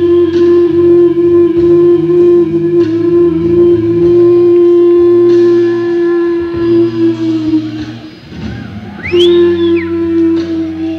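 Live rock band with a Fender Stratocaster electric guitar holding one long sustained note for about eight seconds over moving bass notes. Near the end the note drops away, a high note swoops up and back down, and the sustained note comes back.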